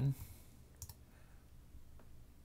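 A single faint click of a computer keyboard key about a second in, over quiet room tone.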